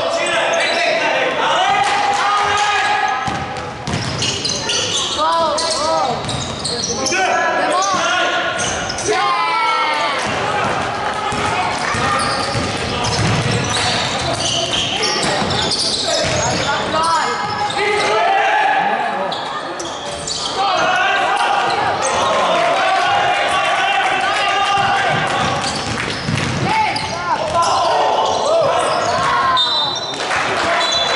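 Live basketball play on a hardwood gym floor: the ball bouncing as it is dribbled, sneakers squeaking in short bursts, and players' voices calling out, all echoing in a large hall.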